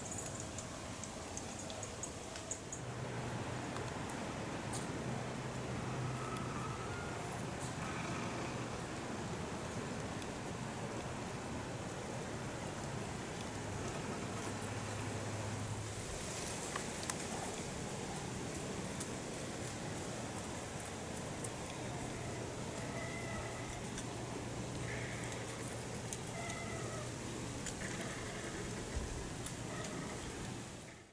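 Woodland ambience: a steady low hiss with a faint low hum underneath, and a few short, faint bird calls, a couple around the first quarter and several more near the end.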